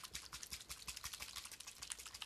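A fast, faint run of light clicks, more than ten a second, with no voice over it.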